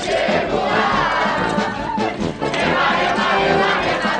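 Carnival music with a crowd of voices singing and shouting along, loud and unbroken.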